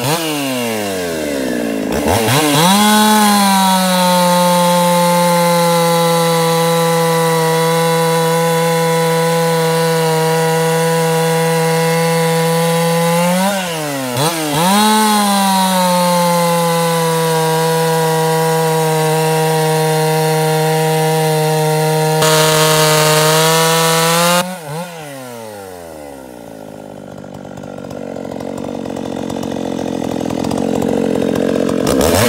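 Ported Husqvarna 51 two-stroke chainsaw with a hand-filed .325 chain cutting through soft pine, holding high revs steadily through two long cuts with a brief dip in revs between them. Near the end the revs fall and it drops back to idle.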